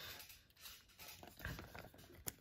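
Faint rustling and sliding of Pokémon trading cards being handled, with a few soft brushes of card against card and hand.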